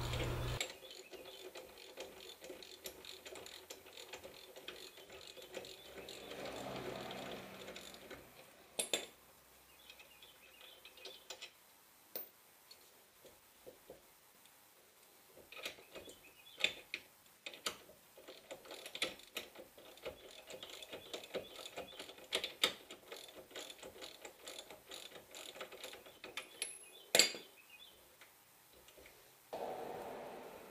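Socket ratchet clicking in short runs as the rear brake caliper's mounting bolts are undone, with a couple of louder sharp clicks of tool on metal, one about nine seconds in and one near the end.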